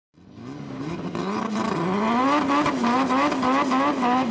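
Turbocharged Honda B-series four-cylinder in an EK Civic hatchback revving high during a burnout, its tyres spinning. The sound fades in, the engine pitch climbs over the first two seconds, then holds high with a fast wavering.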